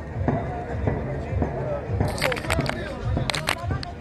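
Background voices of people talking at an outdoor court, with a quick run of sharp knocks about halfway through and another short run a second or so later.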